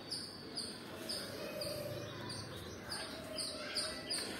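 A bird chirping over and over, a short high chirp about twice a second.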